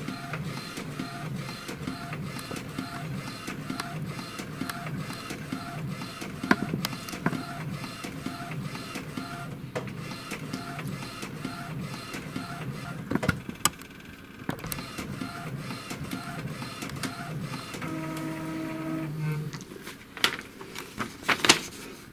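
Epson Stylus Photo TX650 inkjet printing a test page: the print-head carriage runs back and forth at about two strokes a second, with a steadier whine and a few clicks near the end. It is printing at speed again, after a new carriage motor and fresh grease on the carriage shaft.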